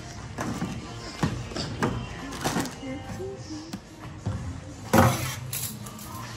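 Music playing, with a series of knocks and clunks as groceries are set down on a checkout conveyor belt, the loudest about five seconds in.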